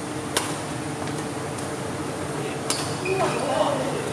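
Two sharp badminton racket strikes on a shuttlecock, about two and a half seconds apart, over a steady hall hum, with voices coming in near the end.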